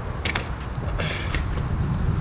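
Steady low wind rumble on the microphone, with a few short knocks and rustles as catcher's gear is set down and an equipment bag is handled.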